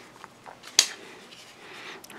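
Andre De Villiers Pitboss 1 flipper folding knife flipped open: a few faint ticks of handling, then one sharp metallic click as the blade snaps open and locks, about a second in.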